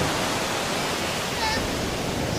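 Sea waves breaking and washing up the beach, a steady rushing noise with no pause.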